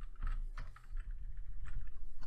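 Computer keyboard typing: a scattering of separate key clicks at an uneven pace, about four or five a second.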